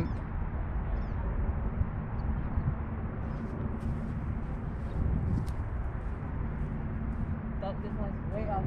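Wind buffeting the microphone in a steady low rumble, with faint voices in the background.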